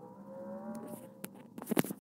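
Harmonica faintly sounding a held chord of several steady notes for about a second, followed by a few clicks and short sounds near the end.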